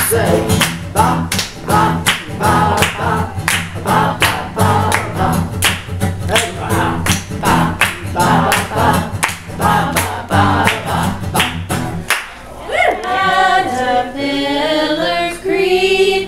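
A woman singing a children's song while strumming an acoustic guitar in a steady rhythm, with hand clapping along. About twelve seconds in it cuts to several voices singing together without accompaniment.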